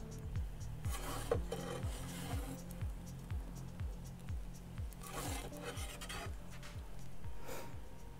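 A perforated metal pizza peel scraping and rasping across the oven's stone baking floor in several short strokes as the pizza is turned and lifted out. Background music with a steady beat plays underneath.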